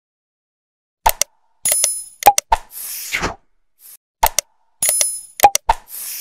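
Sound effects for an animated subscribe-button outro. A second of silence, then sharp clicks, a short high-pitched ding and a whoosh sweeping downward, with the sequence repeating about every three seconds.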